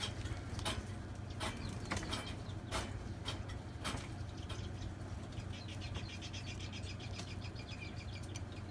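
Light clicks and taps of gloved hands and a small instrument working on a table, over a steady low hum. From about the middle on, a fast, high chirping trill comes in.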